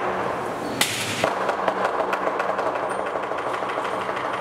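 Lion dance percussion of drum, cymbals and gong playing a quiet, busy passage of rapid light strokes, with a cymbal crash about a second in.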